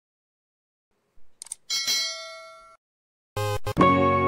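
Bell-ding sound effect of a subscribe-button animation: a short swish, then a ringing chime that fades over about a second. Guitar music starts near the end.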